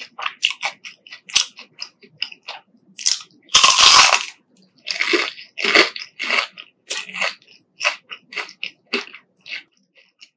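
Crisp breaded fried chicken being bitten and chewed close to the microphone: a run of short crackly crunches, with one loud, longer crunch about three and a half seconds in.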